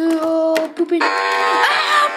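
Music with long held notes; a denser held chord of steady tones comes in about a second in.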